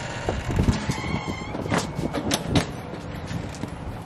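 A run of knocks and clacks with a low rumble as luggage is handled and carried out through a front door, the loudest knocks coming about two and a half seconds in.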